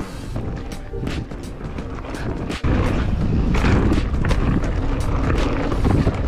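Riding noise from a 2016 Giant Reign enduro mountain bike on a dirt trail: tyres on packed dirt and gravel with frequent clicks and rattles. About two and a half seconds in it jumps to a much louder low rumble.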